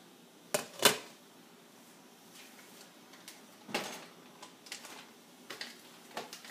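Sharp clinks of cookware being handled: a glass pan lid and a nonstick skillet on a gas stovetop. Two come close together about half a second in, the second louder, and another comes a few seconds later.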